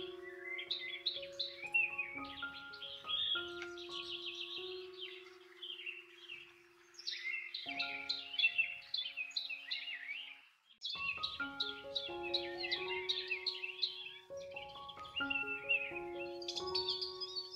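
Calm background music of held, slowly changing notes mixed with continuous birdsong chirping; both cut out briefly about eleven seconds in, then resume.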